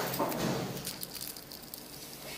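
Handling noise of small jewellery items and their packaging being picked up: a few sharp clicks and rustles at the start, then softer rustling.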